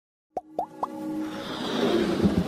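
Animated logo intro sound effects: three quick plops, each rising in pitch, about a quarter second apart, followed by a swell of intro music that grows louder.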